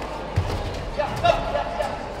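Kickboxing bout in a hall: a dull thud of a kick or step landing about half a second in, then a short shout over another thump about a second in.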